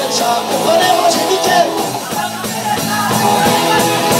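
Live heavy metal band playing loud: electric guitars, bass and drum kit, with a melodic guitar line gliding over the rhythm.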